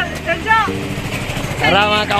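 A vehicle engine idling steadily, with voices over it at the start and near the end.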